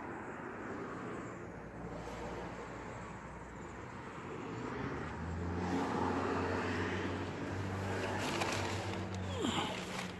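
A motor vehicle's engine running with a steady hum, louder in the second half, with a short falling whine near the end.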